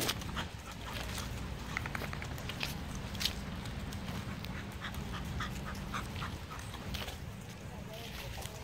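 Several dogs at play, giving short, quick yips and barks in a couple of brief runs, about two seconds in and again around five to six seconds.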